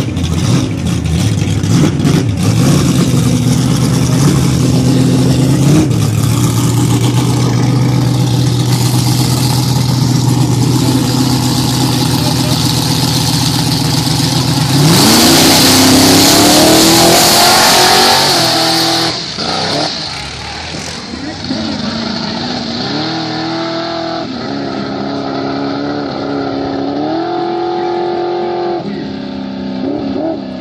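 A first-generation Camaro drag car's engine runs steadily at the starting line. About fifteen seconds in it revs up and launches at full throttle, loudest for a few seconds. It then fades down the track, its pitch climbing and dropping back at each of several gear changes.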